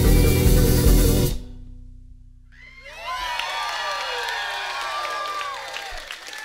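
Live band of keys, electric guitar, bass and drums playing a song to a sudden ending about a second in, a low note hanging on briefly; then the audience cheers and whoops.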